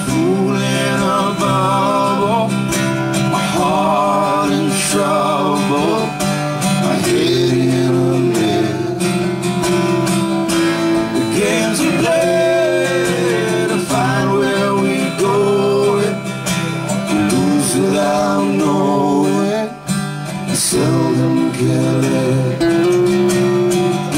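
Two acoustic guitars strummed and picked together in a live folk song, with a short dip in level about four-fifths of the way in.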